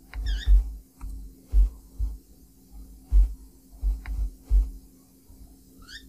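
Irregular low thumps with faint clicks, typical of typing and mouse clicks on a desk heard through a desk-mounted microphone, over a faint steady electrical hum.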